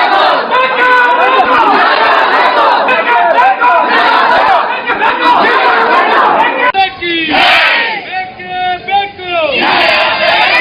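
A packed crowd of men shouting and clamouring all at once. About two-thirds of the way through, the din thins to fewer, clearer voices calling out loudly.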